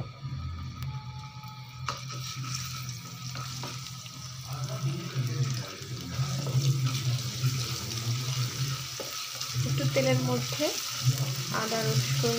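Hot oil in a nonstick pan starts to sizzle about two seconds in as chopped ingredients go in, then keeps frying and grows louder while a spatula stirs them. A steady low hum runs underneath.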